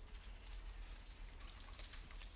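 Faint rustling and light crackling of leek leaves being handled and stripped off the stem by hand, the old outer foliage dry and crisp in places, over a low steady rumble.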